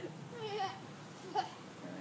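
Honeybees humming steadily around an open hive, with faint voices over it.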